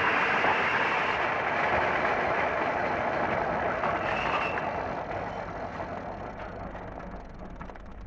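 Film soundtrack: a loud, even rushing noise that slowly fades over the second half, with a fast run of clicks near the end.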